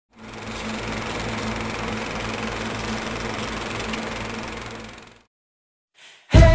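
A steady machine-like running noise with a low hum. It fades in over the first half second and fades out about five seconds in, giving way to silence.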